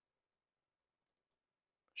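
Near silence, with a few very faint clicks about a second in.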